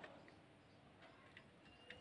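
Near silence with a few faint clicks, one near the end: multimeter probe tips touching the screw terminals of a 12 V switch-mode power supply.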